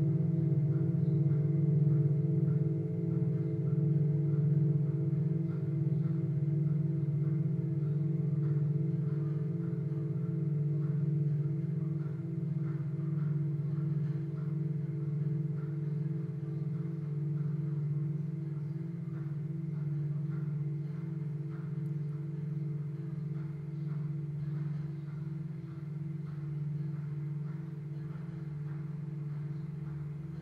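Several metal singing bowls ringing together: a deep hum with higher overtones above it, wavering in a slow pulse and gradually fading.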